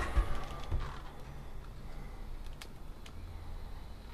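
Low-level room tone with a few faint knocks near the start and a couple of faint clicks later on.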